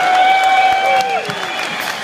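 Concert audience applauding and cheering, with a long high held tone that slides down and stops about a second in.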